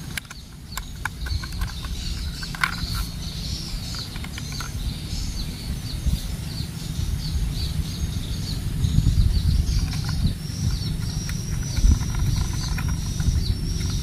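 Birds chirping over and over outdoors, with a thin, high, steady note joining about halfway. A few small plastic clicks come early on as a toy train's battery cover is pressed shut and screwed down, over a low rumble that grows louder in the second half.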